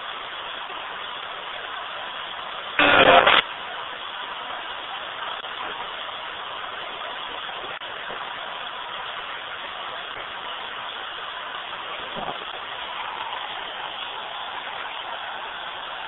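Ghost box, a radio sweeping the FM band, giving a steady static hiss. A short loud blip of broadcast sound cuts through it about three seconds in.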